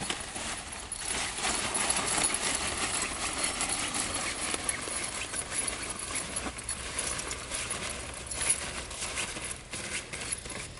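Heavy canvas shower curtain being rolled up by hand and lifted, rustling and rubbing with a dense run of small crackles and knocks.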